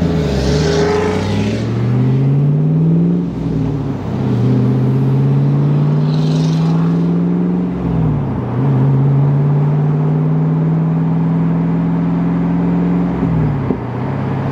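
Chevrolet Camaro SS V8 accelerating away under power, its pitch climbing and then dropping at two upshifts, about 3.5 s and 8 s in. In the higher gear the pitch holds nearly steady until the throttle is lifted near the end.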